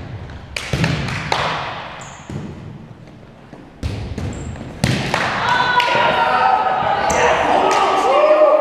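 A volleyball being struck during a rally in a reverberant gym hall: sharp slaps of the ball, several in quick succession in the first second and a half, then more about four and five seconds in. From about five seconds on, players' voices calling out overlap and grow louder.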